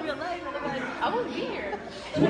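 Indistinct chatter of several people talking at once around tables, with no single voice standing out.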